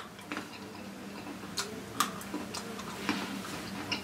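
A Pocky biscuit stick being bitten and chewed: scattered crisp crunches at irregular intervals, about every half second, over a faint steady hum.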